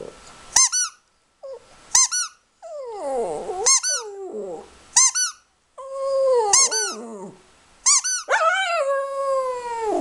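Small long-haired dog howling along to a short, high squeak that repeats about every second and a half. Its howls are pitched wails that slide downward, and the longest, held one comes near the end.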